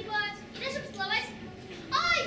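Children speaking lines of dialogue in high voices, in a few short phrases.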